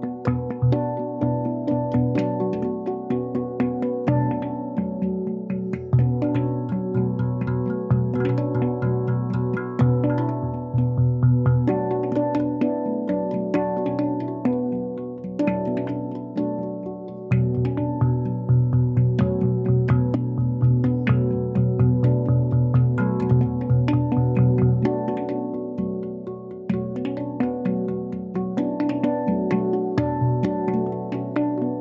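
A steel handpan played by two people at once: a quick, rhythmic run of hand-struck notes that ring on and overlap above a deep, sustained low tone.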